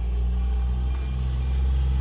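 A steady low mechanical hum with several fixed low tones, unchanging throughout.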